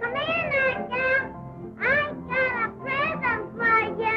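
A young child singing in a high voice, in short phrases of held notes that bend in pitch, on an early-1930s film soundtrack.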